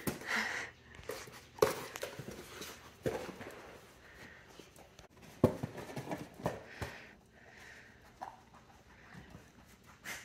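A dog knocking cardboard tissue boxes and toilet paper rolls about and pulling out the stuffed hand towels: irregular knocks and rustles of cardboard, the two sharpest about one and a half and five and a half seconds in, with the dog's breathing between.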